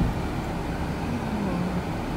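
Car interior noise while driving: a steady low rumble of engine and tyres on the road.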